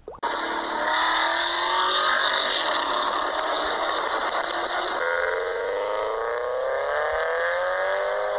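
Car engine running under acceleration, its pitch climbing, with a sudden change to a different engine recording about five seconds in.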